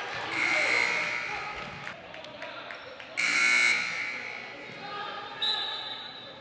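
Referee's whistle blown in two short blasts about three seconds apart, over a basketball bouncing on a gym floor and spectators' voices.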